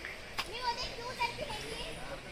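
Faint distant voices, high-pitched like children calling or chattering, with one sharp click about half a second in.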